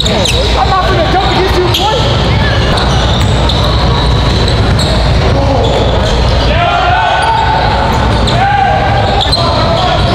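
Live sound of a basketball game in a large gym: a basketball bouncing on the hardwood court, with indistinct voices of players and spectators echoing around the hall.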